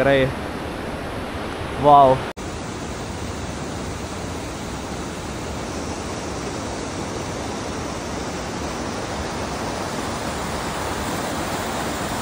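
Steady rushing of a fast mountain stream running over rocks, an even roar of water that grows a little louder toward the end. A brief voice comes about two seconds in, just before an abrupt cut.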